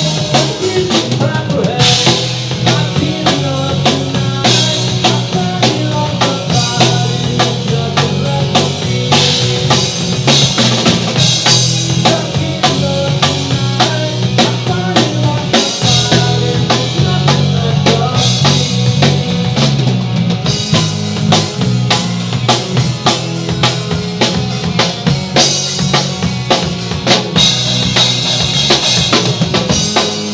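Punk rock band playing live and loud: electric guitars and bass over a drum kit keeping a fast, steady beat.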